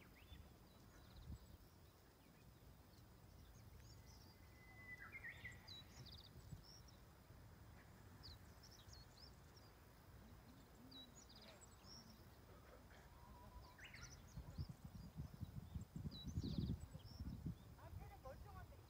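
Faint outdoor ambience of small birds chirping and calling in short scattered notes, with a low rumble that grows louder near the end.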